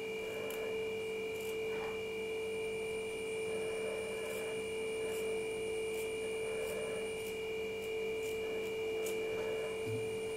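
A steady humming tone with a higher whine runs throughout, over which scissors make faint, irregular snips as they cut through cotton cloth.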